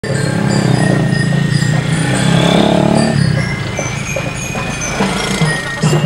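Drum-and-lyre street band playing: ringing bell-lyre (glockenspiel) notes over a bass drum, with a vehicle engine running underneath.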